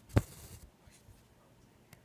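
A sharp knock followed by a short scratchy rustle as needle and floss are worked through cross-stitch fabric by hand, then a faint tick near the end.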